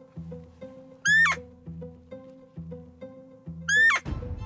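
Two identical short, high-pitched squeaky calls about two and a half seconds apart, each rising briefly then dropping: a roe doe's call played from a FoxPro electronic caller to lure a rutting roebuck. Background music with a repeating plucked beat runs underneath.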